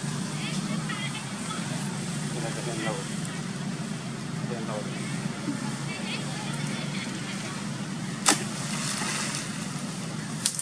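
A steady low hum under an even noisy background, with a few faint vocal sounds and a single sharp click a little past eight seconds in.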